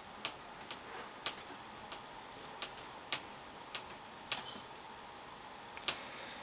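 A string of light, irregularly spaced clicks, about ten in six seconds, over a faint steady hiss, with a brief rustle a little over four seconds in.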